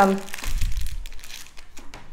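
Crinkling and rustling of craft supplies being handled and rummaged through, fading after about a second and a half into a few light ticks.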